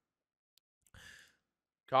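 A man's short breath into a close microphone, about a second in; otherwise near silence.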